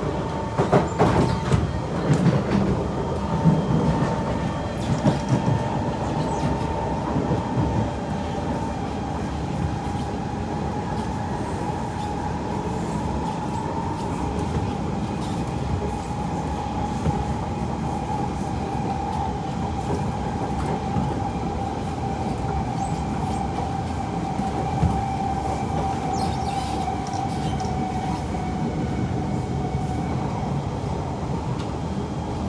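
Kawasaki C151 metro train running on elevated track, heard from inside the car: a steady rumble of wheels on rail with a run of clacks in the first several seconds. A steady whine runs through it and slowly drifts lower in pitch.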